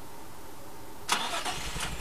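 A 2003 Nissan 350Z's 3.5-litre V6 being started: about a second in, the starter cranks with a sharp onset and a few clicks, and the engine catches into a low rumble near the end.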